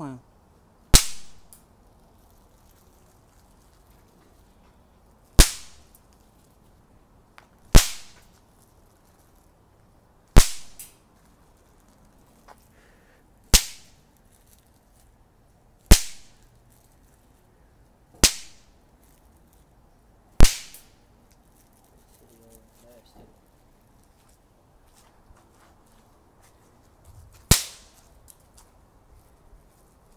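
Maxem P1004L 'Big Snaper' impact firecrackers going off on the asphalt, each a single sharp, very loud crack set off by the impact. There are nine cracks, about two to three seconds apart, with a longer pause before the last one.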